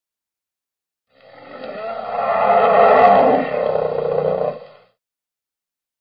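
An intro sound effect, noisy with a roar-like character, that swells for about two seconds and fades out, lasting about three and a half seconds in all.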